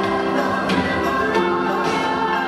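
Music with a choir of voices singing long held notes.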